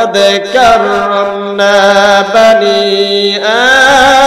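A man chanting a Bengali waz sermon in a melodic, sung style, amplified through microphones. He holds long notes and slides up into each new phrase.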